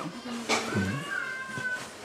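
An animal's drawn-out high call, held for most of a second and rising slightly, after a short low sound about halfway in.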